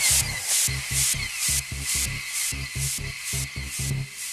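Electronic dance music: a rolling bass line of short, quick notes under a crisp high-pitched hit that comes about twice a second.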